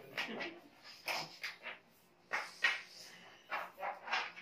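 Several people blowing up latex balloons by mouth: short, irregular puffs of breath into the balloons, about six in four seconds.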